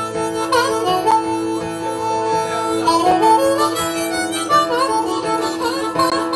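Harmonica solo, played cupped into a microphone, with held notes and bent pitches over strummed acoustic guitar: an instrumental break with no singing.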